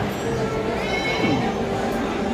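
Busy restaurant dining-room din, with a short, high, wavering pitched sound about a second in.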